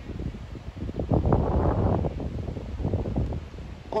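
Wind buffeting the microphone, an uneven low rumble that grows louder about a second in and eases off again.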